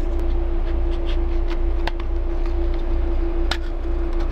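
Steady low machine hum with a constant mid-pitched tone under it. Over it come a couple of sharp small clicks, about two seconds in and again near the end, from the plastic camera housing being pressed apart by hand.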